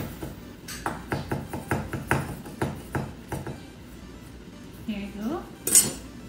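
Knife chopping on a wooden cutting board: a quick run of light, sharp strokes about four a second that stops about halfway through, with background music underneath.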